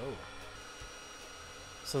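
Looftlighter electric charcoal starter running with its nozzle pressed into charcoal briquettes: a faint, steady fan whir with a thin whine, blowing hot air to bring the coals up to ignition.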